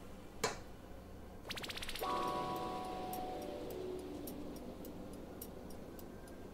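A stainless steel mixing bowl rings when the metal paddle beater knocks against it, a clear metallic tone fading out over about two seconds, preceded by a quick rattle. Light ticks follow as dough is scraped off the paddle with a silicone spatula.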